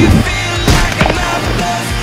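Loud rock music with punch impact sound effects over it: one heavy hit at the start, then two more close together around the middle.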